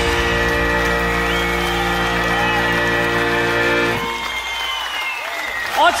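A rock backing track's last chord held steadily and cutting off about four seconds in, with a studio audience applauding through it and on after it.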